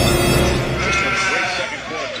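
A drawn-out, wavering voice that grows quieter toward the end, over a steady background of other sound.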